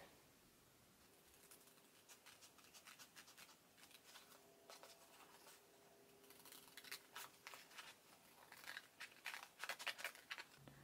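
Scissors cutting a strip from a Badge Magic paper-backed fabric adhesive sheet: faint runs of short snips, more of them in the second half.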